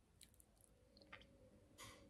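Near silence with faint mouth sounds of chewing a spoonful of soft mashed Weetabix with protein powder: a few small clicks and a brief hiss near the end.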